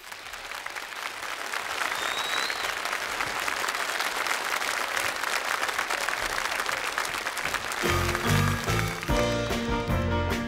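A large audience applauding, swelling over the first couple of seconds and then holding steady. About eight seconds in, the country-gospel band starts playing over the applause.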